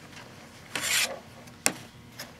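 Quilt fabric rustling as the quilt is handled and laid flat on a cutting mat, with one brief swish about a second in. A single sharp click follows shortly after.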